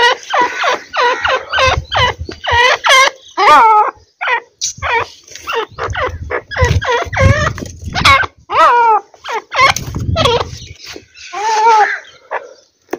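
Francolins calling in a fast run of short, harsh, downward-sliding notes, several a second, with low rumbling thuds underneath at times.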